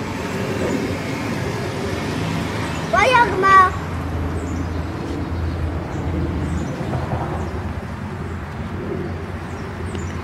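A young child's high-pitched cry, two short rising calls about three seconds in, over a steady low traffic rumble with faint bird chirps.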